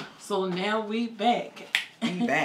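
A voice humming or vocalizing without words for about a second, then a single sharp snap near the end, like a finger snap.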